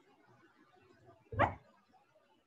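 A single short, bark-like sound, about a third of a second long, standing out sharply against a faint background hiss.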